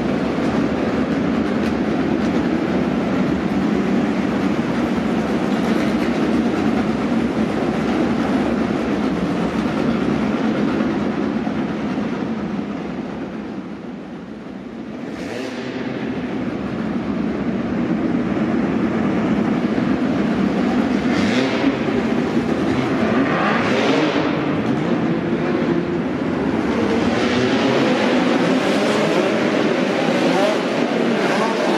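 Several midget race cars' engines running hard around a dirt track: a loud, continuous drone that fades for a moment about halfway through, then swells again with rising whines as cars come past.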